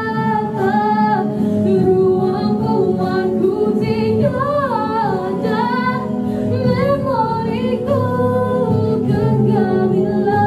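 A woman singing solo into a handheld microphone over sustained musical accompaniment. Her voice wavers through a melodic run with vibrato around the middle.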